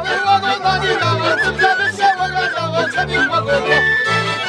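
A Polish highland folk band playing a lively tune: a wooden fujarka flute carries a high, wavering melody over fiddles and accordion. A double bass and accordion bass keep a steady beat underneath.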